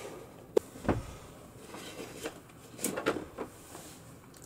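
Small hard-plastic clicks and knocks from the Mattel Masters of the Universe Origins Castle Grayskull playset as its toy throne is turned inwards, tripping the trapdoor mechanism: a sharp click about half a second in, another soon after, then a few softer knocks near the end.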